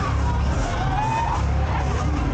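Loud fairground noise at a running KMG Inversion 12 thrill ride: a heavy, steady bass from loud ride music, with a high wail that rises and falls about halfway through.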